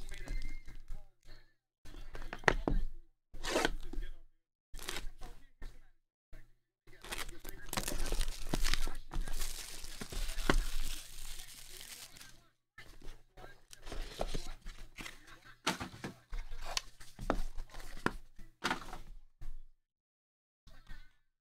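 Plastic wrapping being torn and crinkled off a sealed box of Pro Set Power basketball cards, in separate ripping bursts. The longest and loudest stretch of tearing lasts about five seconds in the middle, followed by shorter crackles and knocks as the box and packaging are handled.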